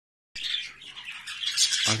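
Budgerigars chirping and chattering in a dense run of high calls that grows louder toward the end.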